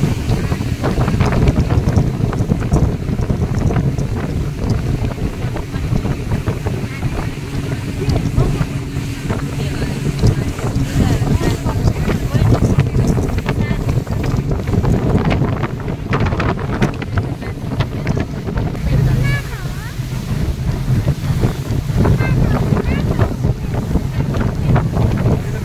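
Wind buffeting the microphone on a moving motorboat, over the steady low drone of the boat's engine.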